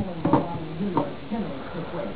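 A man's brief hesitant voice between phrases, with light clicks and clatter from handling small electrical parts.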